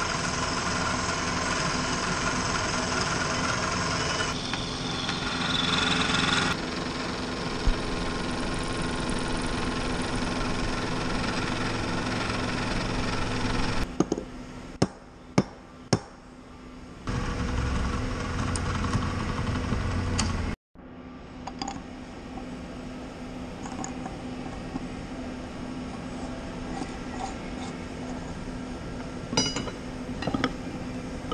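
Vertical milling machine running and cutting a steel bar clamped in a vise: a steady machine noise whose pitch and texture shift a few times as the cut goes on. About halfway through it stops and a few sharp metal clinks sound, then a short low drone gives way to a quieter steady shop hum, with light clinks near the end.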